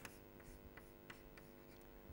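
Faint chalk writing on a blackboard: a few light taps and scratches as the chalk strokes, over a steady faint hum.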